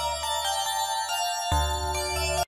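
Tone2 Electra 2 software synthesizer playing its 'DX 111 Fame BT' keys preset: a chord of sustained notes over a low bass note that fades, with a new bass note coming in about one and a half seconds in.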